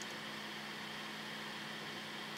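Faint steady hiss with a low hum underneath: the room tone of the narration microphone.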